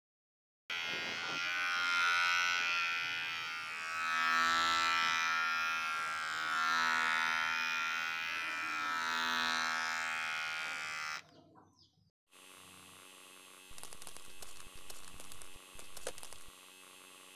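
A dense, steady-pitched buzzing sound effect that starts about a second in, swells and fades a few times, then cuts off around eleven seconds in. After a short gap, a quieter sound with rapid clicks and crackles follows.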